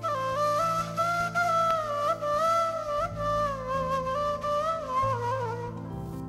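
End-blown flute playing a slow, ornamented folk melody with slides between notes, over low held accompaniment notes that change chord a few times.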